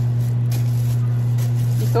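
A steady low hum, with soft rustling of plastic cling wrap as hands press and smooth it over a mixing bowl.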